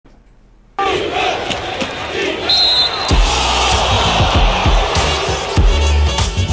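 Intro sting: after a brief silence, crowd noise comes in suddenly just under a second in, then music with a thumping beat starts about three seconds in.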